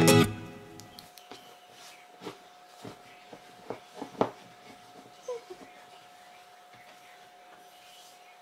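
An acoustic guitar chord from intro music rings out and fades away over the first second. After that there is only low room sound: a few soft knocks and clicks from handling and movement, with a faint steady hum underneath.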